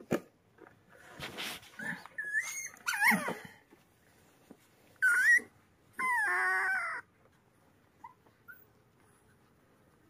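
Puppy whimpering in short, high, wavering cries, several times over the first seven seconds, the last one about a second long, while ticks are being pulled off it.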